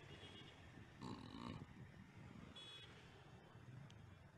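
Near silence: faint outdoor background, with a brief faint call of bending pitch about a second in and a short high chirp a little later.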